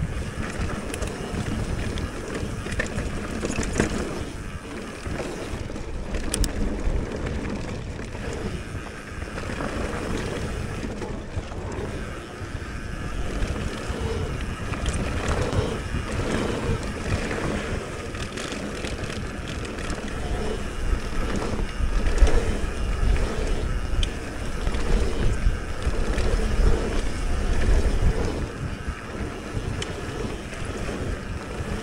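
Mountain bike riding fast down a dirt singletrack: wind rushing over the camera microphone over a steady rumble of knobby tyres on packed dirt, with the bike rattling. The rumble surges louder in the last third as the speed picks up.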